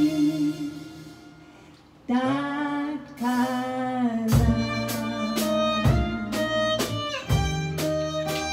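A small acoustic band playing live: violin, singing voice, acoustic guitar, double bass and hand percussion. A held note fades over the first two seconds, then a melody line with vibrato comes in, and from about four seconds in the percussion and bass join in a steady rhythm of strikes.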